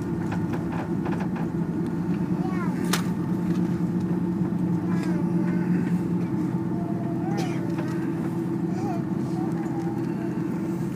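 Cabin noise of an Airbus A330-300 rolling along the runway after landing: a steady low hum of engines and airflow, with a sharp click about three seconds in.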